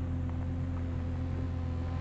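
Steady low electrical hum with faint hiss from the soundtrack of an old black-and-white film.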